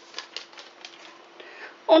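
A small paper packet of vanilla sugar being emptied into a stainless steel mixing bowl: a run of light ticks and crinkles that thins out after about a second.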